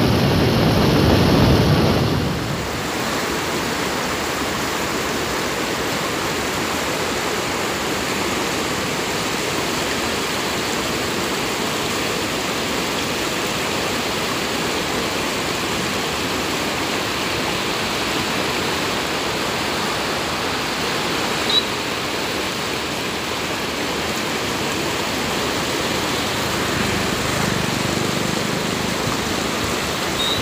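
Wind rushing on the microphone of a moving motorcycle for about two seconds, then a cut to the steady rush of fast, shallow river water pouring over and around boulders.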